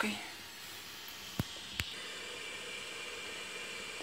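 Grated zucchini frying gently in a pan, a steady hiss; about a second and a half in, two sharp clicks a few tenths of a second apart as a glass lid is set on the pan, and the sizzling goes on under the lid.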